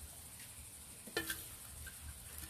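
Faint scraping and rustling of a scoop digging potting soil out of a plastic bucket, with small clicks and one brief sharper sound a little over a second in.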